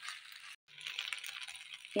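Rice frying in a non-stick pan, sizzling faintly with light crackles and clicks as a spatula stirs it. The sound cuts out for a moment about half a second in.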